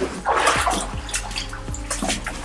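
Shallow water splashing and sloshing in several short splashes, with a brief laugh.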